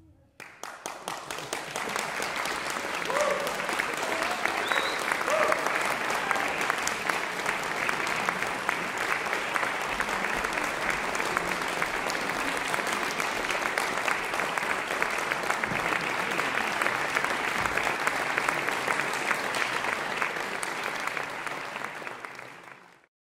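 Concert-hall audience applauding, starting about half a second in after a short silence and holding steady. A few voices call out in the first few seconds.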